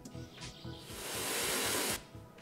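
Rushing waterfall noise fading in over about a second as a crossfade from a quieter jungle ambience clip, then holding steady before stopping abruptly at the end. Soft background music runs underneath.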